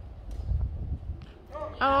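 Wind rumbling on the microphone, louder about half a second in, then near the end a loud exclaimed "Oh!" from a voice close to the microphone.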